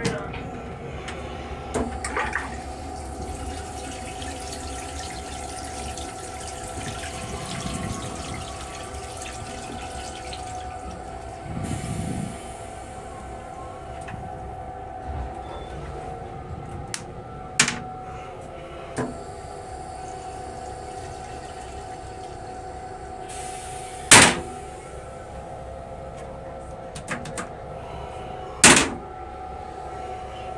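Rail-car chemical toilet flushing: a rush of blue rinse water lasting about eight seconds over the steady hum of the train car. Later come a few sharp knocks, the loudest near the end as the lid is dropped shut.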